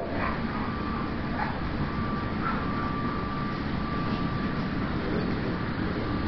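Steady background noise with a faint, thin high tone that comes and goes: the room tone of a quiet dog kennel, with no barking.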